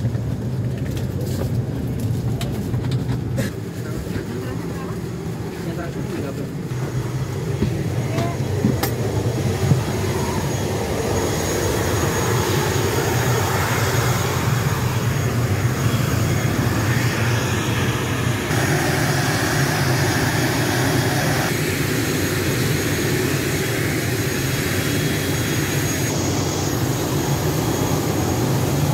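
Steady low drone of a parked airliner's engines running, heard first inside the passenger cabin with murmuring passengers, then outside on the apron, where a broader rushing noise comes in partway through.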